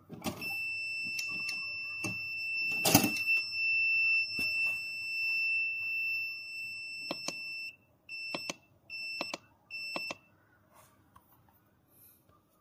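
Fish-camera monitor's fish-alarm buzzer sounding one steady high beep for about seven seconds, then four short beeps of the same pitch. A few knocks from handling the unit, the loudest about three seconds in.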